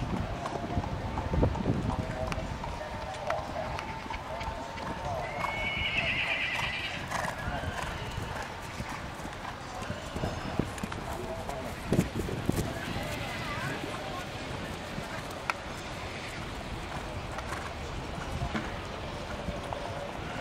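Hoofbeats of a horse cantering on grass over a show-jumping course, with a few heavier thuds. Background voices can be heard.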